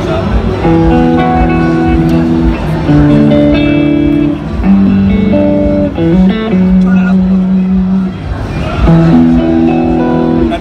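Electric guitar (a PRS) played through the Waves PRS SuperModels amp-modelling plug-in. Chords and single notes are held and left to ring, changing every second or two, with one slide between notes about six seconds in. The tone has punch and sounds like a real miked amplifier.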